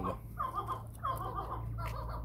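Caged chukar partridges calling: several short notes, each a quick rise and fall in pitch, spaced irregularly through the two seconds.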